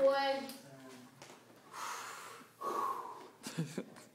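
People laughing: a voiced laugh at the start, then breathy, wheezing laughs.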